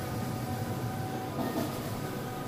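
Skyjet large-format flex printer with Konica 512 print heads running, its print-head carriage traveling over the banner: a steady mechanical whir with faint steady tones.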